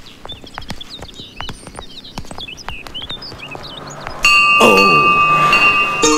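Small birds chirping among scattered sharp clicks, then a hanging metal temple bell is struck about four seconds in and rings on with several clear, steady tones.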